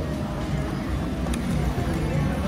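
Casino floor ambience: a steady low rumble with faint background music. A single short click from the video poker machine comes about a second in, as the draw is started.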